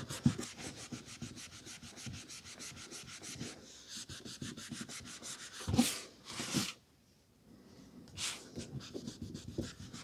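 A cloth rubbing quickly back and forth over a paperback's card cover to clean it. A little past halfway the scrubbing breaks for two louder swishes as the book is handled and turned over, a brief hush, then the rubbing starts again near the end.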